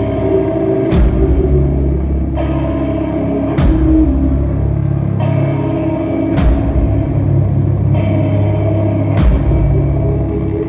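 Rock band playing a slow, heavy instrumental passage live: sustained electric guitar and bass chords, with a big drum-and-cymbal hit about every two and a half seconds. The sound is loud and boomy, as a phone picks it up from the crowd.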